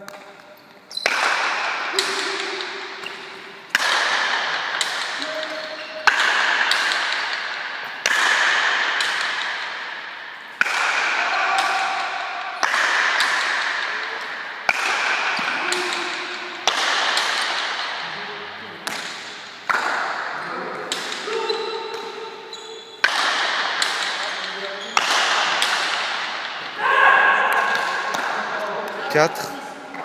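Rally of paleta cuir pelota: the solid leather ball struck with wooden paletas and hitting the walls of the court, a sharp crack about every one to two seconds, each ringing out in a long echo in the large hall.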